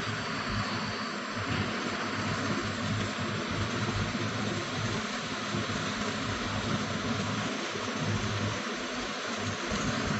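Steady, even hiss of background noise, with no distinct events.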